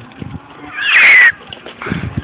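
A loud, high-pitched shriek from a person, about half a second long a second in, with a falling pitch.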